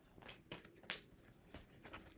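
Faint, scattered soft clicks of a tarot deck being shuffled in the hands, the sharpest click about a second in.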